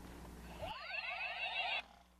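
Electronic toy ray-gun sound effect: several overlapping sweeping tones rising and falling in pitch. It starts suddenly a little under a second in and cuts off just before the end, over a faint low hum.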